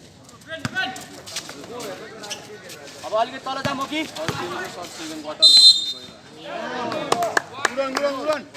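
A referee's whistle gives one short, sharp blast about five and a half seconds in, the loudest sound. Around it are shouting voices and a basketball bouncing on a concrete court.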